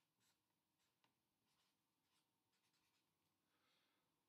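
Near silence, with only a few faint scratches of a marker writing.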